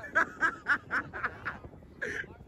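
A person laughing close by in a run of short "ha" bursts, about four a second, fading out after a second and a half.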